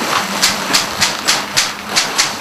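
Stiff old cloth banner rustling and crackling as it is unfolded and held up by hand, in repeated rustles about three a second over a faint steady low hum.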